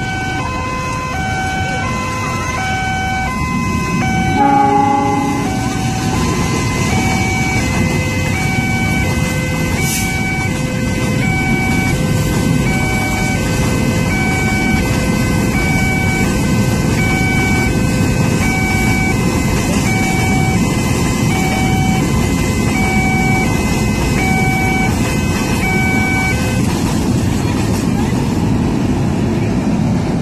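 A train running past with a steady rumble, with a short horn blast about four and a half seconds in. Over it, a repeating electronic warning tone alternates between two pitches about every three-quarters of a second and stops a few seconds before the end.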